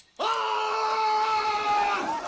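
Movie soundtrack: one long high held tone with a rich, ringing top that starts suddenly a moment in and sags slightly in pitch as it holds.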